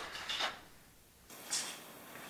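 A few short scrapes and clicks of cord being pulled through a cam jam and carabiner as a tarp ridgeline is tightened by hand.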